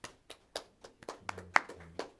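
A few people clapping, the claps separate rather than blended, several a second, with one louder, sharper clap about one and a half seconds in.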